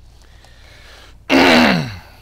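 A man's voice lets out one loud sighing groan a little past the middle, about half a second long and falling in pitch, after a second of quiet room tone.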